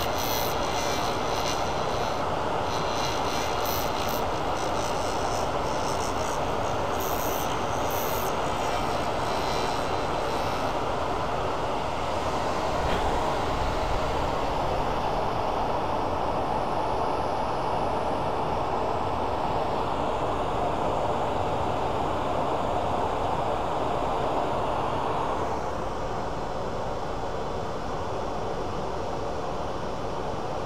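Lathe running steadily with a resin and aluminum-honeycomb pen blank spinning between centers. Faint scattered ticks come through in the first ten seconds or so, and the sound drops slightly about 25 seconds in.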